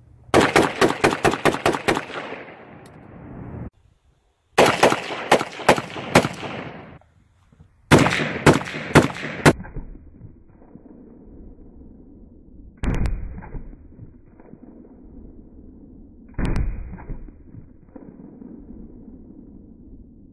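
Short-barreled AR-pattern gun with a Hardened Arms HD-SMC muzzle compensator firing rapidly in three strings of several shots each within the first ten seconds. Two single duller thumps follow later.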